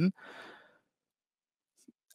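A man's soft breath out, a short sigh, just after he stops speaking, followed by a pause with almost no sound.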